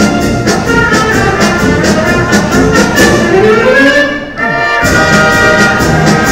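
A municipal wind band of trumpets, trombones, saxophones, clarinets and sousaphone, with congas, plays a Mexican medley over a steady beat. About four seconds in the band briefly thins out around a note that slides up and then down, then the full band comes back in.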